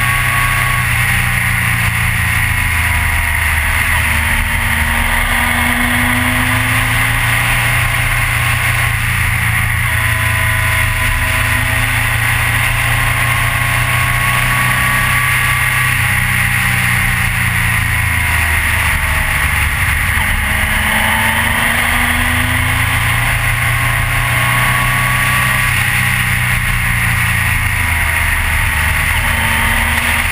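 Triumph Trophy motorcycle engine under way on the road, its pitch rising and falling several times as the rider speeds up, changes gear and eases off. Strong wind rush on the bike-mounted microphone runs underneath.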